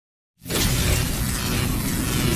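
Channel-intro sound effect: silence, then about half a second in a sudden, loud, dense noise sets in over a low rumble and holds steady.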